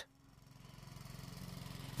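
A faint, steady low engine-like drone, swelling gradually in level with a slight regular pulse.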